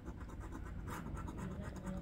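A coin scratching the coating off a lottery scratch-off ticket, with quick, faint, repeated rubbing strokes.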